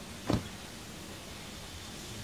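A single short thud of a vehicle door shutting about a third of a second in, over a steady low outdoor rumble.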